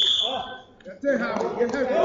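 A referee's whistle blows a single shrill blast of about half a second, stopping the action; from about a second in, coaches and spectators shout over one another in the echoing gym.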